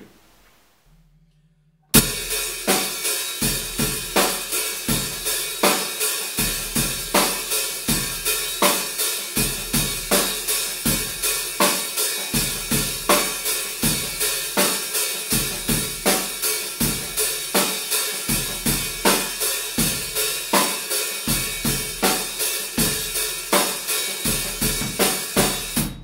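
Drum kit playing a steady rock groove, starting about two seconds in: bass drum and snare under a hi-hat held slightly open with the pedal, so the cymbals ring together in a continuous wash. Playing the hi-hat loosely open like this gives the loud, aggressive rock sound.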